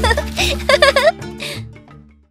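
A young girl's high-pitched giggling over a steady background music bed, both fading out near the end.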